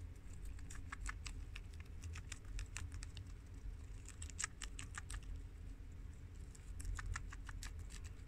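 Guinea pig chewing crisp romaine lettuce close up: a quick, irregular run of small crunches, several a second, over a low steady hum.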